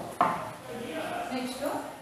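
A single sharp knock, then a woman talking.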